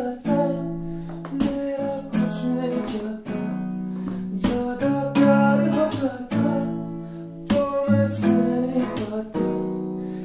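Acoustic guitar strummed in slow chords, struck about once a second, with a man's voice singing a Hindi ballad over it.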